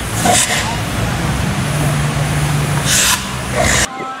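Road vehicle running close by: a steady engine hum under a noisy wash, with bursts of hiss about a third of a second in and again near the end. The sound cuts off suddenly just before the end.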